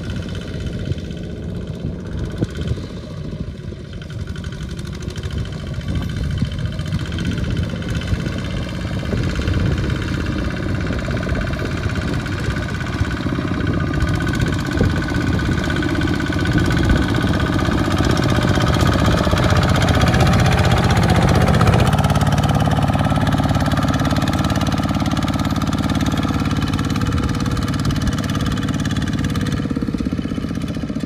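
Single-cylinder diesel engine of a Kubota-type two-wheel walking tractor chugging under load as it hauls a loaded rice trailer through mud, growing louder as it comes closer.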